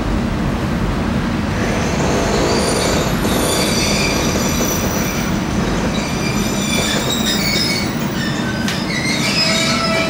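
Steady running rumble inside a Kobe Electric Railway 1100 series car. About two seconds in, several high-pitched wheel and brake squeals set in and grow stronger toward the end as the train slows along the platform.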